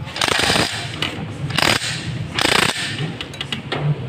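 Socket ratchet wrench clicking in three short bursts as it turns the stator mounting bolts inside a motorcycle's crankcase side cover.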